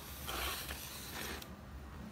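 A paper picture card being slid out of a cardboard kamishibai frame: a scraping, rustling slide lasting about a second and a half.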